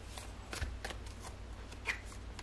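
Tarot cards being shuffled by hand: a string of short, light snaps and slides of card stock, with one sharper snap near the end as a card is pulled from the deck.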